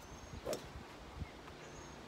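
A golf club swung and striking a practice ball once, a short sharp hit about half a second in.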